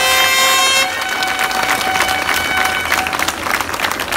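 Crowd applauding, dense clapping, with a horn held on one steady note at the start: its full sound ends about a second in and a fainter part lingers to about three seconds.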